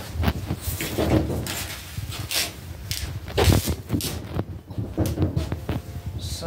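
Scattered knocks, bumps and rustles of handling as pinstripe tape is pressed and smoothed onto a truck fender by hand. The loudest knock comes about three and a half seconds in.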